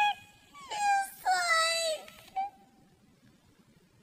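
A high-pitched wailing voice: a run of drawn-out cries that slide up and down in pitch, ending about two and a half seconds in.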